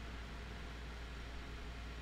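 Steady background hiss with a low, constant hum: the room tone and microphone noise floor of a recording setup, with no other event.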